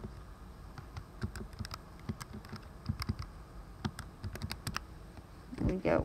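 Keys being pressed in an irregular run of short clicks as a calculation is keyed in.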